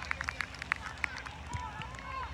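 Players running on artificial turf: a rapid, irregular patter of footfalls and cleat scuffs, with a player's short call about three-quarters of the way through.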